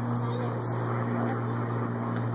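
A steady low mechanical hum, even in loudness throughout, with faint voices over it.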